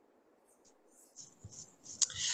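Near silence: room tone, with a few faint, short noises in the second half.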